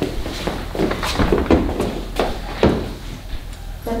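Small children's footsteps and shoe scuffs on a wooden parquet floor: a run of irregular knocks, with a few sharper thumps.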